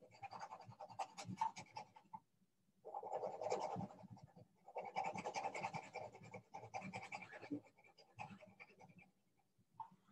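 Quick back-and-forth scratching strokes of a drawing tool shading on paper, in three bursts with short pauses between, thinning out near the end.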